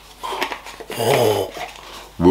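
A low, growl-like vocal sound about a second in, with a few faint clicks just before it.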